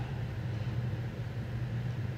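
Steady low hum inside a car cabin.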